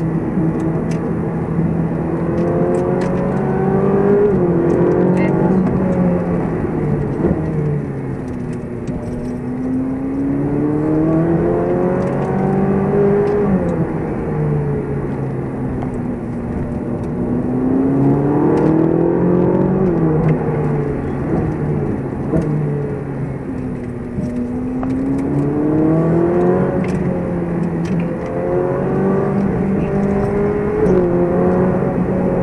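Ferrari 458 Speciale's V8 engine heard from inside the cabin, revving up and dropping back about four times as the car accelerates and eases off through a run of bends.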